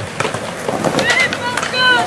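Skateboard wheels rolling over concrete with a run of sharp clacks and knocks, mixed with the voices of people nearby, including a high-pitched shouted call in the second half.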